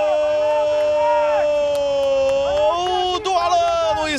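A football commentator's long drawn-out goal cry, "Gooool!", held on one steady pitch for the first two and a half seconds or so, then breaking into shorter shouted syllables.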